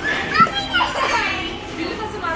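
Young children's high-pitched squeals and chatter as they play, with a brief sharp thump about half a second in, the loudest moment.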